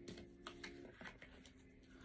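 Faint clicks and flicks of a tarot card deck being handled and shuffled, a few soft card snaps in the first second, over a faint steady hum.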